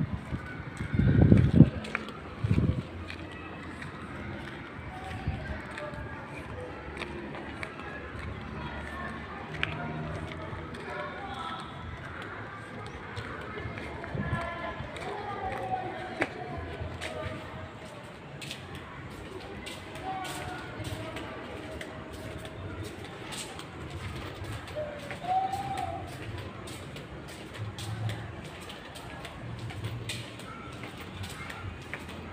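Indistinct distant voices over the footsteps of someone walking, with a loud low rumble on the microphone about a second in.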